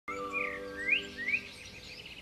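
Birds chirping, with three quick rising chirps in the first second and a half, over a soft held music chord that fades out.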